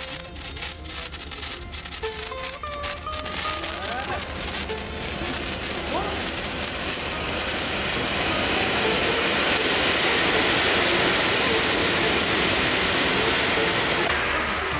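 Firecrackers: a sparkler crackling, with a few gliding tones over it, then a flowerpot fountain firework (anar) hissing. The hiss builds from about six seconds in and stays loud.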